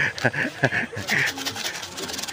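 Plastic shaker cup of es kocok (iced drink) being shaken hard by hand, bartender-style: a quick rhythmic rattle of about six strokes a second through the first second, then softer.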